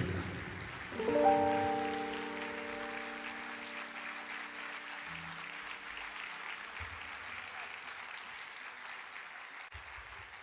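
An acoustic ensemble's final chord, struck about a second in and slowly dying away, under steady audience applause.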